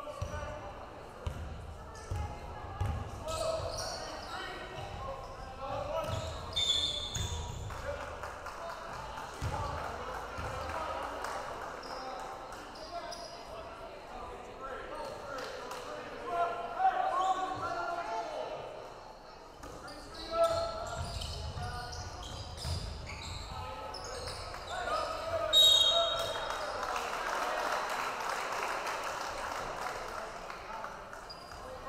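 Basketball bouncing on a hardwood gym floor during a game, the dribbles coming in runs of low thumps. Crowd chatter carries through the gym, with a few short, sharp high sounds, the loudest about 26 seconds in.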